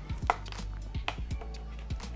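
Light, irregular clicks and knocks from a Beike QZSD Q999H tripod's centre column and head being handled and pushed into the socket at the top of the tripod, about half a dozen small taps.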